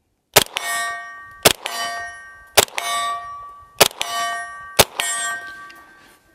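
9mm CZ Scorpion EVO 3 S1 carbine firing five shots of Remington 115-grain full metal jacket about a second apart, each followed at once by the ringing clang of a metal target being hit at about 50 yards. The carbine cycles every round without a stoppage.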